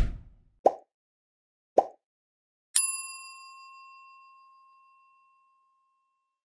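Sound effects of an animated logo end screen: a low whoosh, two short pops about a second apart, then a struck, bell-like ding that rings on and fades away over about two and a half seconds.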